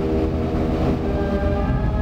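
Wind band playing sustained brass chords over a full low-brass bass; the harmony shifts about a second in.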